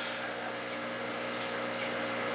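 Steady hum of running aquarium pumps and filters, several constant low tones over an even hiss of moving water.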